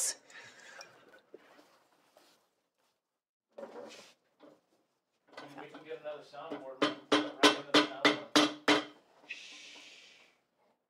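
A shoe hammer tapping a glued leather seam flat against a stone slab: a quick run of about seven sharp taps, roughly three a second, each with a brief ring. A short hiss follows near the end.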